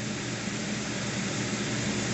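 Steady hiss with a faint low hum underneath, unchanging throughout.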